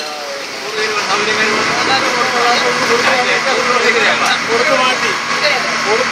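A boat's engine running steadily while cruising, with voices talking over it.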